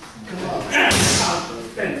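Boxing gloves hitting a hanging heavy punching bag, with a sharp grunt or hissing exhale on each punch: one loud hit about three-quarters of a second in and a lighter one near the end.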